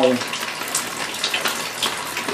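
Water from a leaking roof running steadily, with a few sharper drips.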